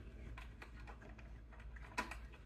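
Faint light clicks and small handling noises, with one sharper click near the end, as the RC crawler truck is handled and set down.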